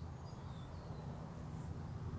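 Quiet outdoor background: a steady low rumble with a few faint, short bird chirps.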